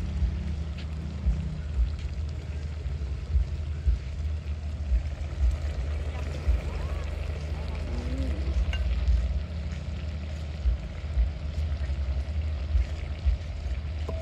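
Gas stove burner running under a pot of simmering curry: a steady low rumble with irregular bumps, and faint voices in the background.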